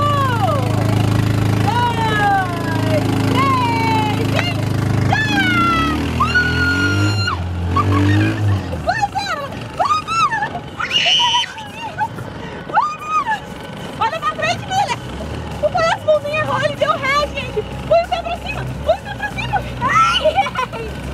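Excited shouting voices urging on a race, loud and rising and falling throughout. Underneath, a steady low hum runs for about the first eight seconds and then stops.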